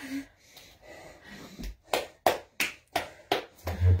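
A person breathing hard while doing push-ups, followed in the second half by a run of about six short, sharp taps, roughly three a second.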